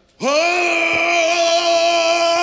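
A man's singing voice, after a brief silence, scoops up from low into a long, steadily held high note, belted into a microphone with no instruments playing.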